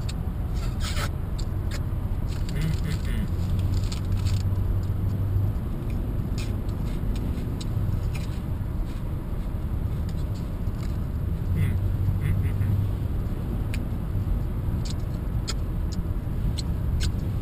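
Steady low road rumble inside a moving car's cabin, with scattered crisp clicks of someone chewing crunchy barbecue pork rinds, thickest in the first few seconds and again near the end.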